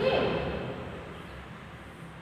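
A single spoken word at the start, then steady background hiss of room noise.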